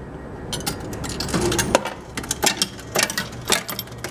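The Cavalier 96 vending machine's coin changer taking a quarter and paying out nickel change: a quick run of sharp metallic clicks and clinks from coins and the changer mechanism, starting about half a second in.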